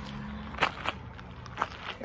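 A few footsteps of a person walking, after a held hesitation hum.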